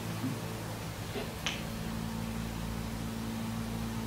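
Room tone with a steady low electrical hum, and a single small click about a second and a half in.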